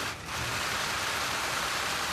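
Dense, steady clatter of many press photographers' camera shutters firing together, with a brief dip just after the start.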